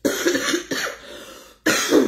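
A woman coughing three times, hard, the last cough about a second and a half after the first.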